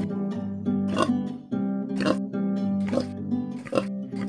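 Acoustic guitar strumming a chord accompaniment with a samba-like rhythm, accented strokes coming about once a second.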